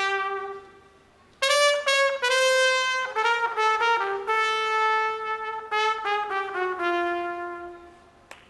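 Background music: a solo brass melody of slow, held notes, breaking off for a moment about a second in, then carrying on with long sustained notes and fading out near the end.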